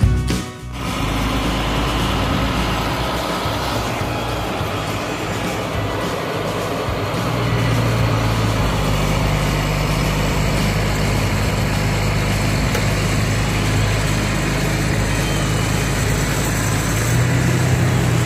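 Diesel engine of a knuckleboom log loader running steadily under load with a low hum while its grapple loads logs onto a log truck; the engine note grows heavier from about seven seconds in. Music is heard briefly at the very start.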